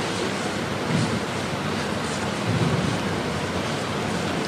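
A steady rushing noise with faint low murmurs.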